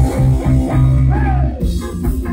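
Live rock band playing loud: electric guitar and bass over drums, with a note bending in pitch a little past halfway.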